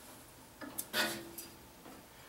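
A few light metallic clicks and ticks from a hub puller being worked on a furnace blower wheel's hub. One click has a brief ring after it.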